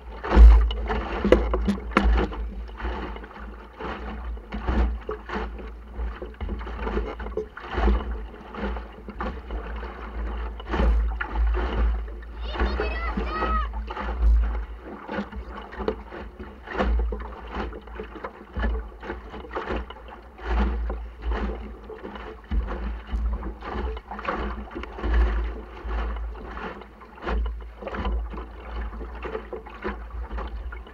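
Water slapping and rushing against the hull of a small sailing dinghy under way in choppy sea, in irregular splashes, over a constant low rumble of wind on the microphone. A voice calls out briefly about halfway through.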